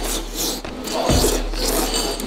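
A person slurping wide noodles up from a bowl of beef noodle soup, in several noisy sucking draws.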